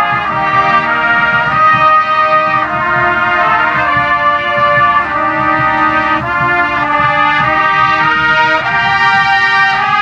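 Drum corps trumpet section playing a warm-up together in harmony: held chords in several parts, moving from one chord to the next about every second.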